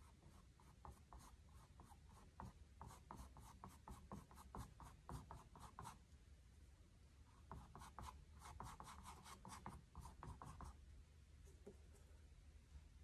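Faint, quick scratching of a bristle paintbrush dabbing short strokes of acrylic paint onto a canvas, several strokes a second. The strokes come in two runs with a short break in the middle and stop shortly before the end.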